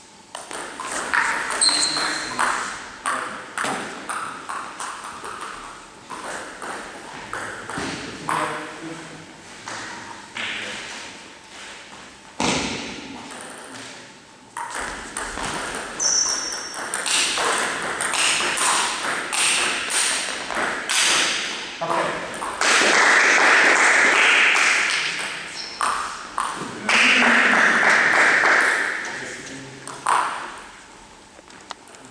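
Table tennis rallies: the orange ball clicking back and forth off the rackets and the table in quick runs of sharp ticks. Voices are heard, and two loud stretches of noise lasting a few seconds each come in the second half.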